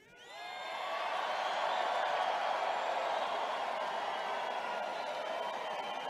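Large crowd cheering in a gym. The sound swells over the first second, with a few whoops near the start, then holds steady.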